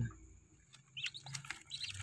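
Newly hatched Muscovy ducklings peeping faintly: a few short, high chirps about a second in.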